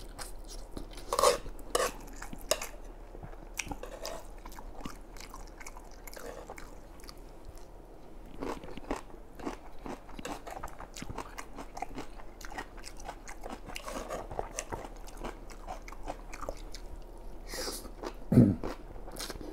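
Close-miked chewing of a mouthful of spicy noodles and abalone: wet, crunchy bites and mastication, with a few louder bites in the first three seconds. Near the end comes a short slurp as more noodles are sucked in.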